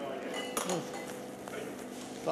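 A single sharp metallic clink about half a second in, ringing briefly, with a short snatch of a voice right after it and a steady hum underneath.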